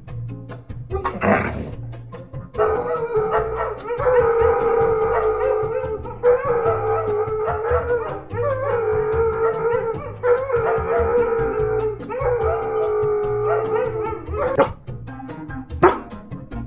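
German Shepherd howling: a run of about six long, slightly wavering howls, each about two seconds, over background music.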